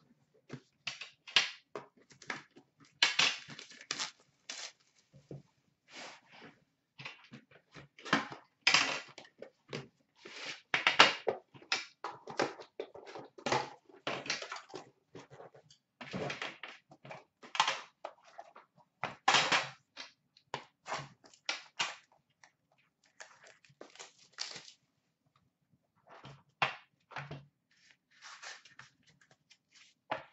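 Plastic shrink wrap being torn and crumpled off a trading card box: irregular crackles and rustles that come thick and fast, ease off for a second near the end, then give way to a few light knocks as the cardboard box is handled.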